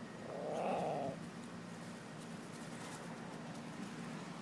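A small dog growling in play: one rough growl, rising and falling in pitch, lasting about a second near the start.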